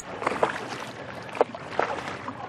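Sea water rushing and splashing against the hull of a small outrigger sailing boat under way in choppy water, with a few sharper splashes and wind noise.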